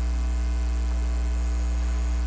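Steady low electrical mains hum picked up by the microphone and sound system, unchanging in pitch and level, with no other sound.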